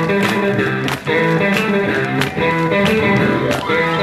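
Live rock and roll band playing an uptempo number: hollow-body electric guitars and piano over a steady beat of regular sharp hits. There is a brief drop-out about a second in.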